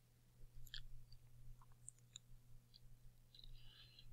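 Near silence: a steady low hum with a few faint, scattered clicks.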